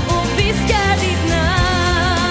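Female pop vocal over a backing band with bass and drums; about halfway in the singer moves to a long held note with vibrato.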